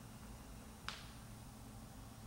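A single short, sharp click about a second in, over faint steady hum and hiss.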